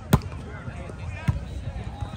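A volleyball struck twice by hand: a sharp slap just after the start, the loudest sound here, and a second, softer hit about a second later, with players and onlookers talking.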